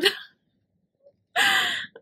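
A woman's brief laugh, then about a second of silence, then a short breathy gasp.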